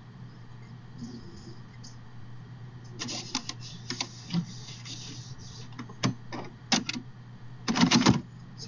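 A steady low hum throughout, with bursts of clicking and clattering from about three seconds in, typical of someone using a computer keyboard and mouse.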